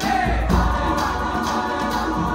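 Large high-school mixed choir singing an upbeat gospel-style song over instrumental accompaniment with a steady bass beat, the singers clapping along.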